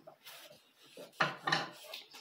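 A toddler whispering softly close to the microphone: two short breathy syllables about a second in.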